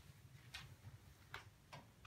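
Near silence: quiet room tone with three faint, brief clicks spread over the two seconds.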